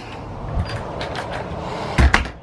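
A front door being pulled shut and its knob and lock worked by hand: rubbing and scraping with a low thud about half a second in, a few sharp clicks, and a louder click and thud at the end.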